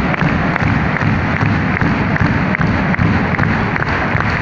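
Large crowd of ice hockey fans in an arena chanting, with evenly spaced beats about three a second running through it.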